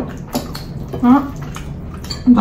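Wet eating sounds of rice and gravy being mixed and eaten by hand, with a few small clicks early and a short voice sound about a second in.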